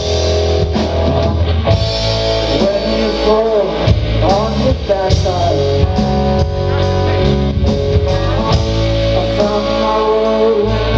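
Live rock band playing: electric guitars, bass guitar and drum kit, with a steady drum beat and a lead line that wavers and bends in pitch a few seconds in.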